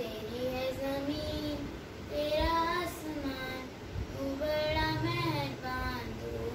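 A girl singing a prayer solo, in long held phrases with short breaks between them.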